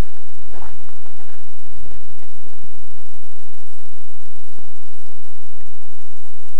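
Loud, even wind rush over the microphone of a camera riding on a radio-controlled slow flyer plane in flight, with low buffeting rumble.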